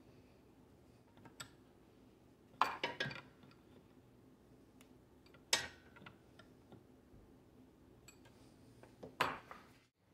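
Small hard clicks and knocks of a plastic air filter housing being screwed back onto a plasma cutter and handled, the loudest a short cluster about a quarter of the way in and a single sharp knock about halfway through.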